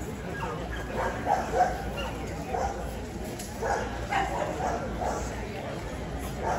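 A dog barking in a string of short, repeated barks, about half a second to a second apart, over the murmur of crowd chatter.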